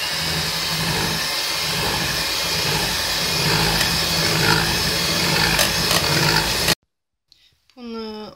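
Electric hand mixer running steadily, its beaters whisking an egg-yolk and sugar cream in a steel pot as warm milk is poured in. It stops abruptly about seven seconds in.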